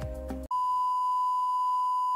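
A steady, unwavering broadcast test-card tone, one pure beep held without change, starting abruptly about half a second in as the music cuts off.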